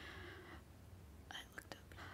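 Near silence at a close microphone: a faint breath, then a few small mouth clicks about a second and a half in.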